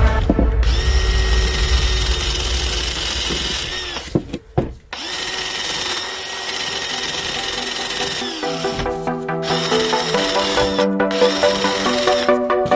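Cordless drill spinning a wire wheel brush against the rusty metal handwheel of an old water stop valve, scrubbing off rust. The motor runs with a steady whine, cuts out briefly about four seconds in, then runs again.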